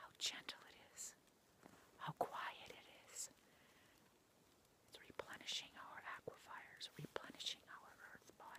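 A woman's soft whispering in short breathy bursts, with a pause of over a second near the middle.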